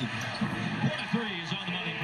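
NBA game broadcast audio playing back: a play-by-play announcer talking over arena crowd noise, with a basketball bouncing on the hardwood.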